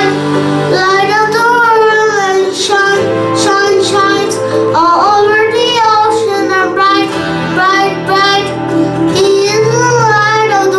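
A young boy singing a song into a microphone over an instrumental accompaniment, his melody wavering above steady held bass notes that change every couple of seconds.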